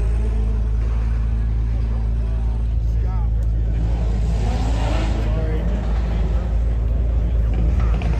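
A car engine idling with a steady low hum, with people talking in the background.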